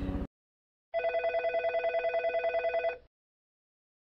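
Telephone ringing sound effect for a production logo: one ring of about two seconds with a fast, even trill, starting about a second in.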